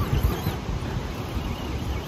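Wind buffeting the microphone: an uneven, low rumbling noise.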